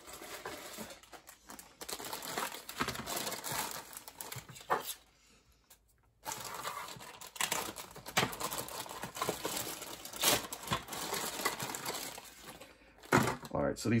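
Clear plastic bags crinkling and rustling as bagged plastic model-kit parts are lifted out of the box and set down, with small clicks and knocks of plastic. There is a short quiet gap about five seconds in.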